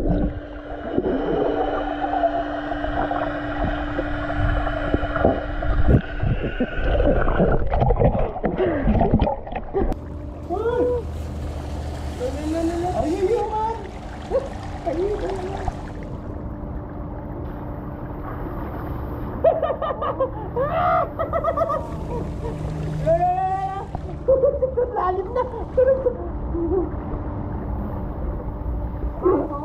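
Swimming-pool sounds heard underwater: bubbling and knocking over a steady low hum for the first ten seconds or so. After that come muffled voices sliding up and down in pitch, with light splashing, while the hum continues.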